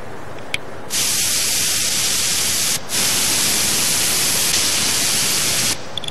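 A steady hiss of pressurised gas spraying. It switches on abruptly about a second in, breaks off for a moment near the middle, and cuts off suddenly just before the end.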